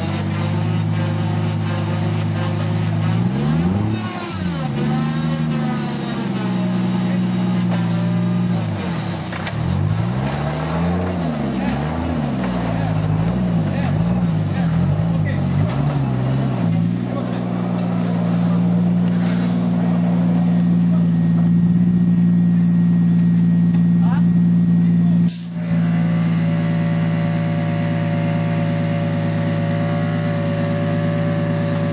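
Off-road 4x4 engine revved up and down again and again as the vehicle claws up a muddy slope, then held at steady high revs for the second half.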